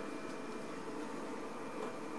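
Steady low hum and hiss of room tone, with no distinct events.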